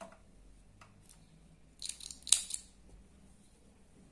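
Scissors snipping sewing thread, a few quick sharp cuts about two seconds in, after a short quiet spell with faint clicks.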